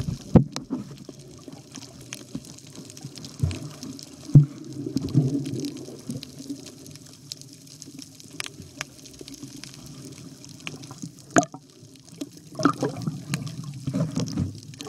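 Water sloshing and splashing close to the microphone, with scattered knocks and clicks throughout and a livelier stretch near the end.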